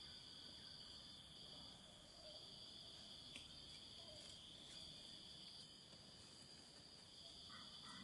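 Faint, steady, high-pitched insect chorus: a constant shrill drone that neither rises nor falls, with a few faint ticks.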